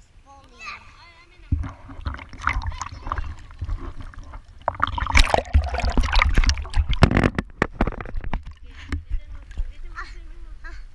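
Pool water splashing and sloshing right against the camera as a child swims beside it, building from about a second and a half in and loudest around the middle, with sharp slaps of water. Voices are heard briefly at the start.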